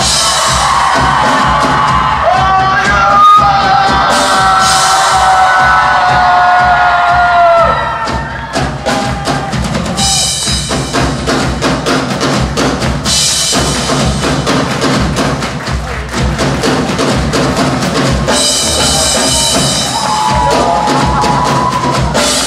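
Live rock drum kit played solo: rapid, dense strokes on snare, toms and bass drum with cymbals, the drum-solo intro to the song. For the first several seconds, loud sustained high ringing tones sit over it.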